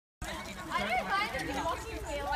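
Indistinct people's voices talking, starting just after the sound cuts in.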